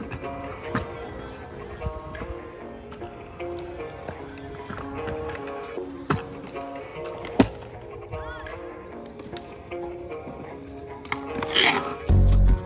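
Background music with a held melody, over which a kick scooter's wheels and deck clack on concrete, sharpest around a hop and landing a little past the middle.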